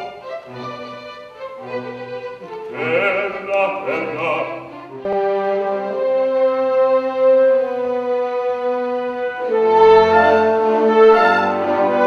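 A male operatic voice sings with vibrato over a string chamber orchestra, and the voice stops about five seconds in. The orchestra then plays long sustained chords and swells louder near the end.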